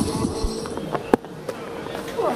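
Quiet cricket-ground ambience under a steady faint hum, with one sharp click a little over a second in.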